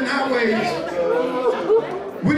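Speech: a man talking, with other voices chattering in the room.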